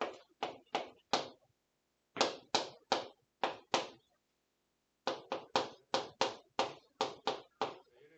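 Chalk striking and stroking across a chalkboard as an equation is written: about eighteen short, sharp taps in three quick runs with brief pauses between.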